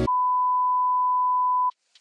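A TV colour-bars test tone: one steady, unwavering beep held for about a second and a half, then cut off suddenly.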